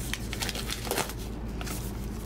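Plastic shrink wrap crinkling and tearing as it is peeled off a Blu-ray SteelBook case: a quick, irregular run of crackles.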